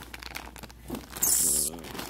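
Plastic packaging crinkling and rustling as a hand digs through a tool bag, with a loud hiss lasting about half a second past the middle and a short murmured voice under it near the end.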